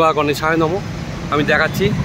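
Speech over the steady rumble of city street traffic.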